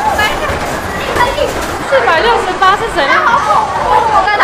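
Young women's excited speech and chatter, several voices overlapping, over the background din of an arcade.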